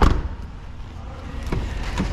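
An SUV's rear passenger door shut with a solid thump, then a fainter latch click about a second and a half later as the driver's door is opened.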